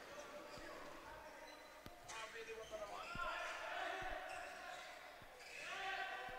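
A handball bouncing a few times on an indoor court, the dull bounces faint and echoing in a large sports hall, with faint distant shouts from players.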